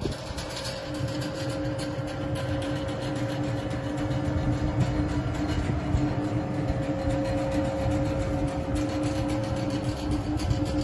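TGV electric power car running with a steady two-note electrical hum over a low rumble.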